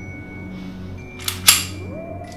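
A handgun being cocked: two sharp metallic clicks close together about a second and a quarter in, the second louder, over soft background music.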